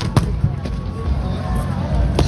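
Boxing-glove punch landing at close range: one sharp thud just after the start, then a softer knock about half a second in, over a low steady rumble.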